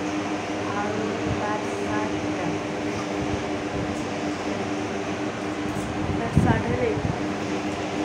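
A steady motor hum with a constant low tone runs under faint voices, with one brief thump a little past six seconds in.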